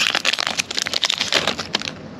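Foil wrapper of a trading-card pack crinkling and crackling as it is pulled open and the cards are slid out, the crackles thinning toward the end.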